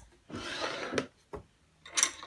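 A wooden desk drawer sliding open: wood rubbing on wood for about half a second, ending in a sharp knock about a second in, with a fainter tap just after.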